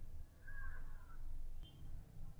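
Faint background hum of a home recording room, with a soft, brief wavering call-like sound about half a second in.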